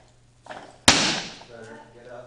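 A barbell loaded with Eleiko bumper plates is racked in a clean: one sharp, loud crack of bar and plates about a second in, then a fading rattle of the plates. A strained voice follows near the end.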